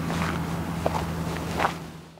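Outdoor background: a steady low hum under a faint hiss, with a couple of soft short sounds, fading out at the end.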